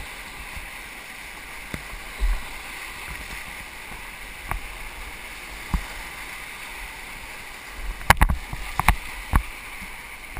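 Whitewater rapids rushing steadily around a kayak, with scattered sharp splashes from paddle strokes and water hitting the boat; a quick cluster of splashes and knocks comes about eight to nine and a half seconds in.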